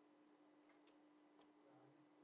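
Near silence with a few faint, irregular computer-keyboard key clicks as text is typed, over a steady faint hum.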